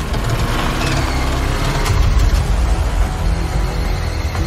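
Movie trailer soundtrack: a car engine running hard as the car speeds up, with a heavy low rumble, mixed with dramatic score music.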